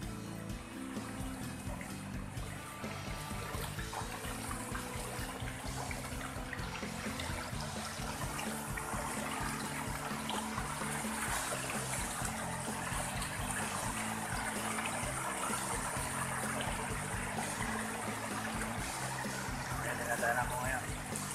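Shallow stream running over rocks, getting louder as it goes, with background music underneath.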